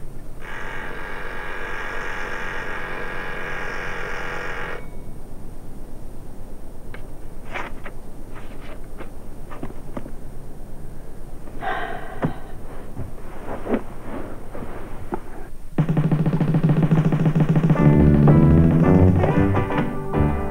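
A kitchen oven timer buzzer rings steadily for about four seconds, then rings again briefly about twelve seconds in, marking the end of a timed reading period. Near the end a sudden loud low sound starts and music with low bass notes comes in.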